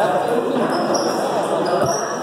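Table tennis ball bouncing, over people talking in a large hall.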